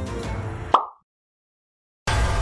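Background music cut off by a single short, bright pop sound effect about three-quarters of a second in, followed by dead silence.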